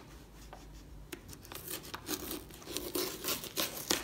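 Scissors cutting through brown paper wrapping on a box, with the paper crinkling: a few scattered clicks at first, then a denser run of cutting and rustling that grows louder over the last two seconds.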